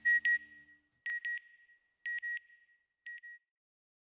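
Electronic double beeps, a pair of short high tones about once a second, each pair fainter than the last until they fade out about three and a half seconds in.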